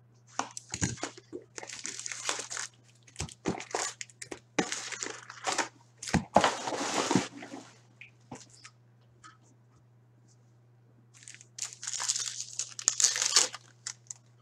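Plastic wrapping and foil packs of Upper Deck hockey cards crinkling and tearing in the hands as a box is opened. The sound comes in a run of rustling bursts over the first seven seconds or so, stops, then comes back in another burst of crinkling near the end. A low steady hum runs underneath.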